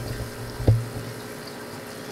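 Steady rush and splash of water in a reef aquarium sump with a Tunze Comline DOC Skimmer 9012 running, over a low hum. A single sharp knock comes just under a second in.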